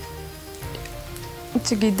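Soft background music of long held notes over a steady hiss. A woman's voice comes in near the end.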